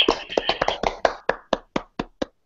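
A few people clapping, heard through a video call: quick, close-packed claps at first that thin out to single claps and stop near the end.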